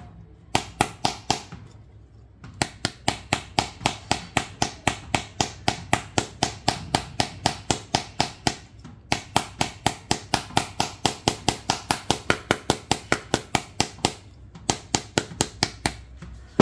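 A small steel hammer tapping on the glass screen of a Samsung Galaxy S23 FE phone, in quick runs of light strikes about four or five a second, with short pauses between the runs.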